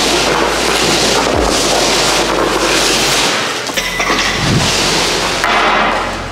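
Skate blades scraping the ice in repeated swells of about a second each as a goalie pushes and slides in the crease, over a steady low hum.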